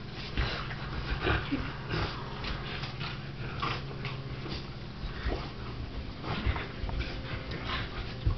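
Bulldog puppy sniffing and giving small whimpering noises in short, irregular bursts while it play-wrestles.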